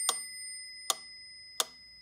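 Mechanical pyramid metronome ticking, three sharp ticks about three-quarters of a second apart, while a high bell-like ring fades underneath.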